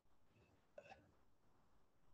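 Near silence: room tone in a pause between spoken words, broken by one faint, short sound a little under a second in.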